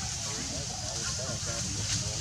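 Indistinct voices talking quietly over a steady high-pitched hiss and a low hum.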